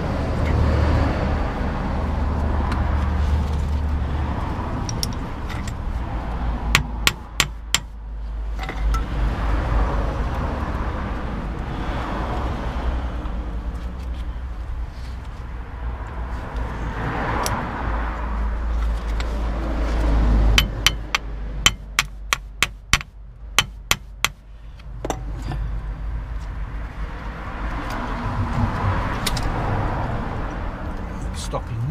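Sharp metallic clicks and clinks of a VW Golf MK4 rear brake caliper and its new pads being handled and worked back into place. There is a handful of clicks about a quarter of the way in, and a quicker run of about ten in the last third, over a steady low rumble.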